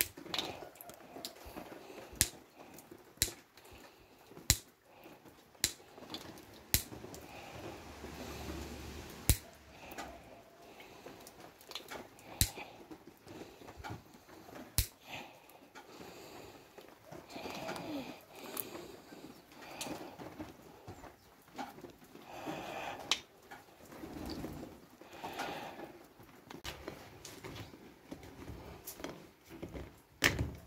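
Side cutters snipping the tails off plastic zip ties, about ten sharp snaps spaced irregularly, with rustling and handling of plastic-coated wire mesh in between.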